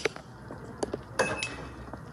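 A few faint, light clicks, spaced apart, over low background noise.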